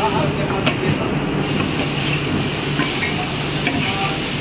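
Hot sugar syrup pouring and sizzling as it goes from a large iron wok into a batasa machine's hopper, with a few light metal clicks, over a steady low hum.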